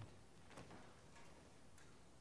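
Near silence: room tone with a few faint, evenly spaced clicks, about one every half second or so.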